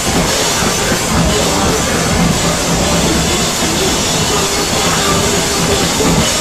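Hardcore punk band playing live at full volume: distorted electric guitar, bass and drum kit in a dense, unbroken wall of sound.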